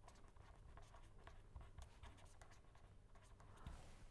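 Faint scratching of a pen on paper: a quick, irregular run of short strokes as words are handwritten.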